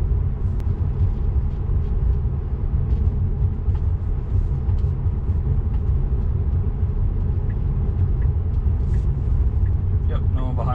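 Steady low rumble of tyre and road noise inside the cabin of a 2018 Tesla Model 3 cruising at speed.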